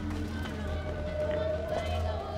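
Film soundtrack: background music with a steady low hum under a held, slightly rising mid-pitched tone.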